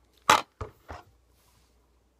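A tin of dip tobacco set down with a sharp clack, followed by two fainter, duller knocks as it is handled against the other cans.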